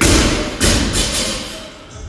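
Loaded barbell with bumper plates dropped onto a rubber gym floor: a heavy thud right at the start and a second one about two-thirds of a second later as it bounces, each with a short ring.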